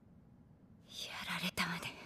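Hushed, whispered speech that starts about a second in and lasts about a second, after a near-silent start.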